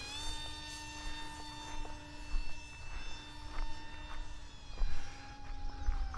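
Electric AeroScout RC trainer plane's motor and three-blade propeller droning steadily in flight, a steady pitched hum whose pitch dips slightly about five seconds in and again near the end as the throttle eases. A low rumble of wind on the microphone lies underneath.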